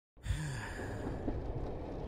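A voiced sigh: one short, low exhale falling in pitch, starting just after a brief dead-silent cut at the very start, over a steady faint background hiss.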